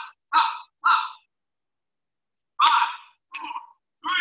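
A man's short, breathy vocal bursts while doing speed jacks, in two quick pairs with a pause of about a second and a half between them. The audio drops to dead silence between bursts, as a video call's sound gating does.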